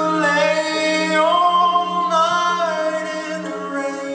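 Mixed male and female a cappella group singing through microphones: a steady low bass note held under sustained chords, with the upper voices sliding between notes.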